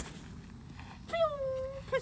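A golf club strikes the ball and turf with one sharp click, followed about a second later by a drawn-out, falling wordless groan from a person.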